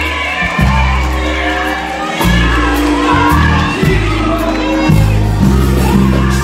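Live gospel band music: long held bass notes that change pitch every second or so, under voices singing, with a crowd cheering along.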